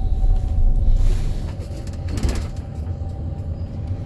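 Wheelchair-accessible taxi heard from inside the passenger cabin: steady low engine and road rumble as the taxi drives, a little louder in the first second, with a brief rattle about two seconds in.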